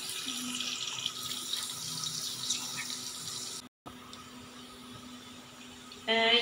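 Onions frying in oil in an aluminium pot on a gas stove: a steady sizzle under a faint low hum. The sound cuts out abruptly a little over halfway through, leaving only quieter background noise with the hum.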